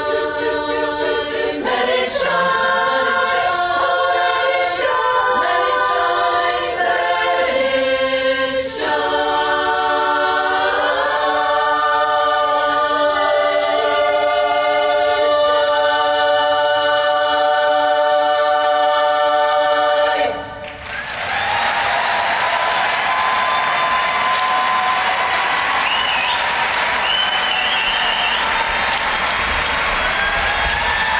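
Women's a cappella barbershop chorus singing in close harmony, closing on a long held final chord that cuts off about two-thirds of the way through. The audience then breaks into sustained applause.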